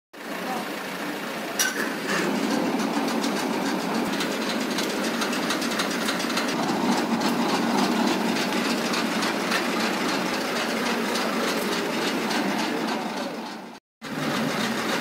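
Engine of a borewell-cleaning rig running steadily, with a sharp click about one and a half seconds in. The sound cuts off suddenly just before the end.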